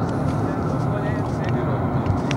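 A steady low rumble of background noise with faint voices in it, during a pause in the speech.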